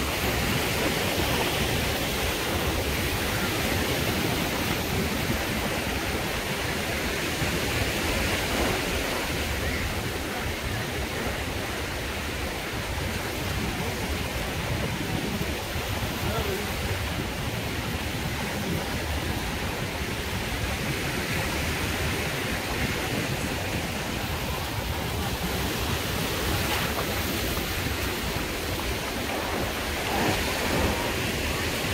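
Small waves breaking and washing up the sand: a steady rush of surf, with indistinct voices of beachgoers mixed in.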